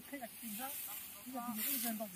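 Faint voices talking at a distance, with a short rustling swish near the end as rice stalks are gathered and cut by hand.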